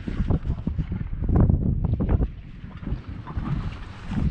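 Gusty wind buffeting the microphone in uneven surges, with water washing against a small boat's hull.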